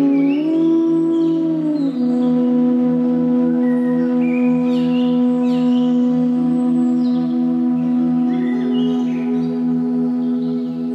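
Slow meditative flute music: a long low note bends up and back down, then is held over a steady drone, with birdsong chirping over it.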